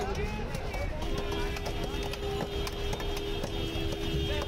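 Background voices talking over one another, with a steady held tone that comes in about a second in and holds for the rest.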